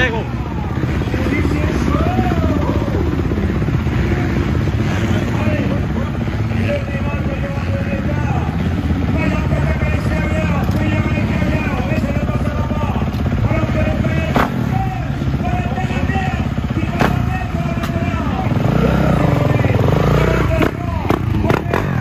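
Dirt bike engines revving up and down during a freestyle motocross show, over background voices.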